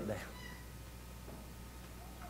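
A man's voice finishes a word at the very start, then a pause of quiet room tone with a steady low electrical hum.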